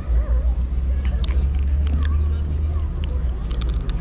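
Cats crunching dry kibble: a few sharp crunches about a second in, at two seconds and a cluster near the end, over a steady low rumble and faint distant voices.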